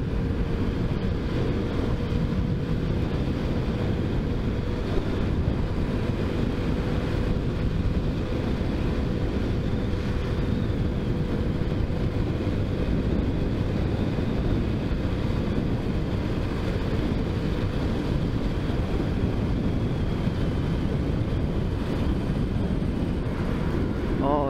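Small motorcycle cruising at a steady speed, its engine note holding even under a constant rush of wind and road noise.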